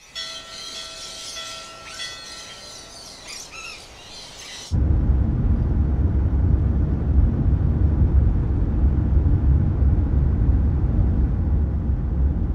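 A quiet hiss with a few high chirps and calls, cut off abruptly about five seconds in by the much louder, steady low rumble of a car's cabin on the move.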